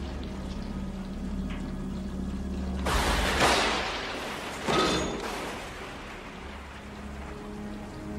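Two heavy crashes about two seconds apart, a rock being slammed against an overhead sewer pipe in time with thunder, the second with a short metallic ring. Beneath them are steady rain and a quiet orchestral film score.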